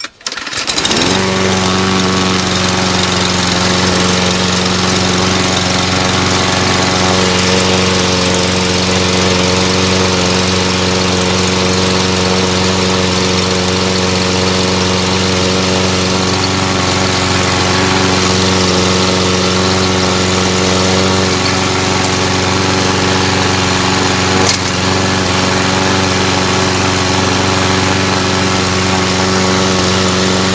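Briggs & Stratton 725EX 190cc single-cylinder engine on a Troy-Bilt self-propelled lawn mower catching about a second in on its first start after winter storage, then running steadily at a constant speed.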